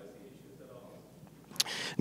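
Faint, distant voice of an audience member speaking away from the microphone, trailing off early on. Near the end there is a short noisy sound close to the microphone, just before the close-miked voice begins.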